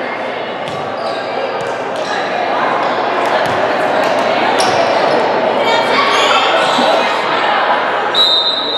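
Overlapping voices of players and onlookers echoing in a large gymnasium, with a few sharp knocks on the hardwood court through it.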